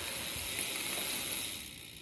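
Novatec D792SB rear hub's freehub ratcheting as the wheel spins freely, a soft, steady, hiss-like buzz that fades near the end. It is subdued because the freehub body is packed with heavy lubrication, in the owner's view, though it now sounds a little louder than when new.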